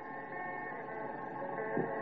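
Soft background music of held notes, fading in.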